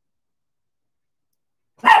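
Near silence, then a dog barks suddenly near the end.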